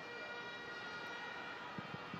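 Faint, steady stadium ambience of a football match broadcast, with a few thin, steady high hums held over it.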